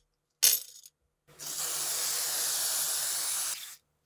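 A sharp clink of metal on glass about half a second in, then a WD-40 aerosol can spraying onto the guitar's tuning machines in a steady hiss for about two and a half seconds before it cuts off.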